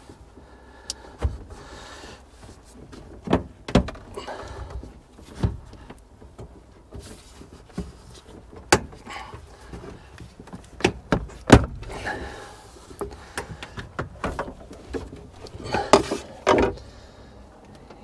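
A pry bar working a skid steer's recirculation air filter out from behind the seat: irregular clicks and knocks as the metal retaining clips pop loose, with scraping of metal on the plastic filter housing between them.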